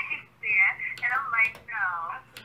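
A voice talking over a telephone line, thin and narrow-sounding: the other party on the phone call speaking in short phrases.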